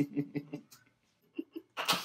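Men laughing in short breathy bursts that die away, then a sharp, snort-like burst of breath near the end.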